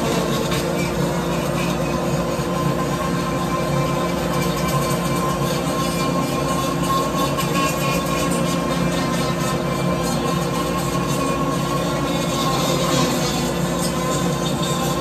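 A rotary grinding tool runs at a steady speed with a constant high whine while porting a Stihl 461 chainsaw cylinder.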